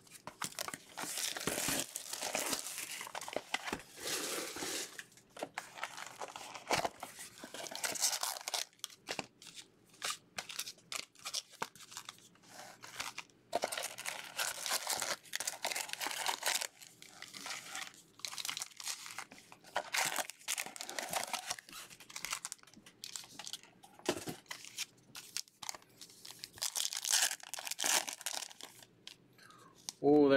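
Hands tearing open and crinkling packaging: foil baseball-card pack wrappers and cardboard box packaging, in irregular bursts of rustling and ripping.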